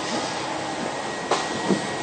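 Steady air-conditioning hiss filling a large room, with one brief sharp noise about one and a half seconds in.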